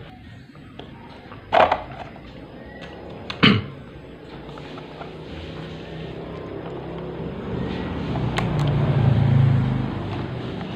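Handling of a stand fan's white plastic base as its cover is opened. There are two sharp plastic knocks in the first four seconds, then low scraping and handling noise that grows louder toward the end.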